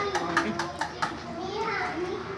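Background chatter of several people, with a quick run of sharp clicks or taps through the first second or so.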